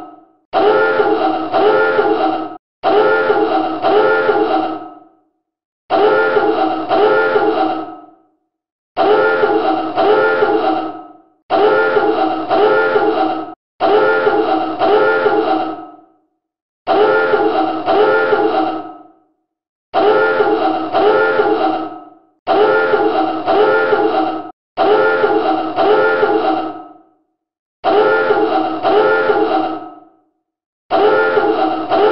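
Submarine dive alarm: a klaxon sounding in repeated blasts of about two seconds, each a pair of pulses that fades away, with short gaps between, about eleven times. It signals that the boat is diving.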